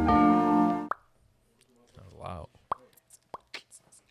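Intro jingle with bell-like plucked tones that ends about a second in on a short rising plop. It is followed by quiet with a few faint clicks and a brief murmur of voice.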